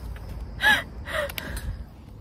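A person's short, loud gasp-like cry about half a second in, with the pitch arching up and down, followed by a second, weaker breathy cry, over a steady low rumble.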